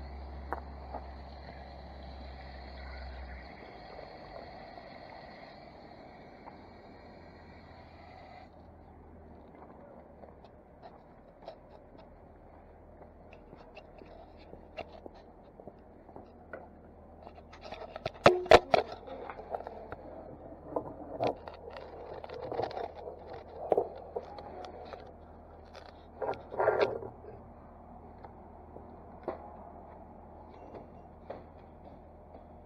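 Scraping, rustling and several sharp knocks of a handheld camera being carried and set down, the loudest bumps in the second half. A steady hum runs under the first eight seconds, then stops.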